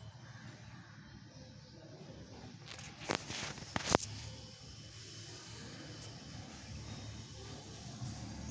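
Faint, steady ground ambience of a live cricket broadcast between deliveries, broken by two sharp clicks a little under a second apart, about three seconds in.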